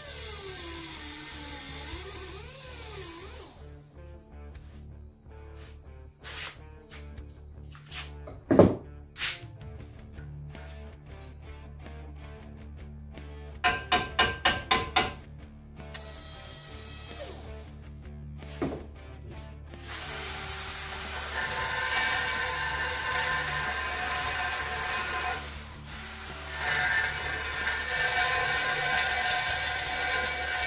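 Hand-tool work on steel angle bar: a whine that wavers in pitch for the first few seconds, scattered sharp clicks, and a quick run of about six taps midway. From about two-thirds of the way in, a cordless drill runs steadily, drilling into the steel angle bar, with a short pause before it starts again.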